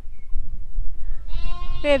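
A lamb bleating once, a short steady call about a second and a half in, over a low rumble of wind on the microphone.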